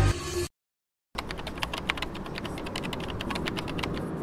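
Music cuts off about half a second in. After a brief silence comes a rapid run of keyboard-typing clicks over the steady low noise of a moving car.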